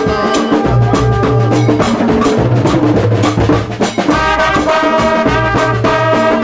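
Live band music from a brass band: keyboard, a rhythmic bass line and drums, with the trumpet section coming in together on sustained notes about four seconds in, after a brief dip.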